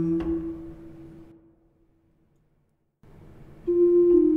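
Gregorian chant: the last held note of the Tract is cut off with a click and dies away over about a second, followed by about a second and a half of dead silence. Near the end, new steady sustained notes begin, stepping between pitches, as the Offertory starts.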